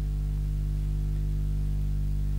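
Steady electrical mains hum with a buzz of overtones, unchanging throughout.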